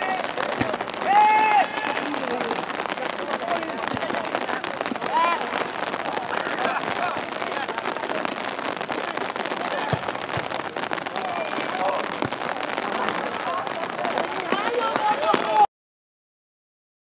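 Steady patter of rain with players' shouts across the football pitch: a long call about a second in, another around five seconds, and several more near the end. The sound cuts off suddenly just before the end.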